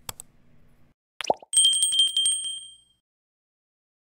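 Subscribe-button animation sound effect: a faint pop at the start, a sharp click about a second in, then a bright bell ding with a fast flutter that rings for about a second and a half and fades out.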